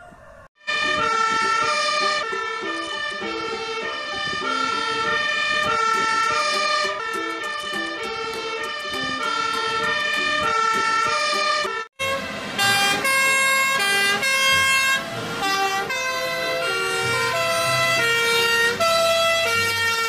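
Fire engine sirens of the European two-tone kind, several sounding together and stepping between notes in a repeating pattern, starting about half a second in. There is a short break about 12 s in, then more sirens with a truck engine running underneath.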